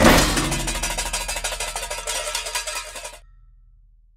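Cartoon magic-burst sound effect: a sudden bang right at the start, then rapid crackling and sparkling over a low rumble that fades away and stops a little after three seconds.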